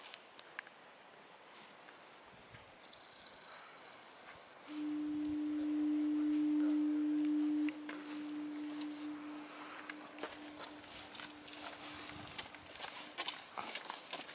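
Foghorn sounding one long, steady low note that starts suddenly, holds for about three seconds, then dies away more quietly over the next several seconds.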